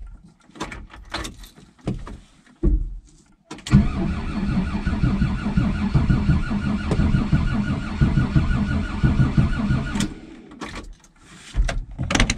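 Starter motor cranking the old VW camper van's diesel engine in sub-zero cold for about six seconds with a steady, even rhythm. The engine never fires and the cranking stops abruptly, after a few clicks at the start. The no-start is later found to be caused by the van's anti-theft safety switches being left off.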